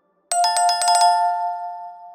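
Notification-bell sound effect: a quick run of bright bell strikes starting about a third of a second in, ringing on at two main pitches and fading away over about a second and a half.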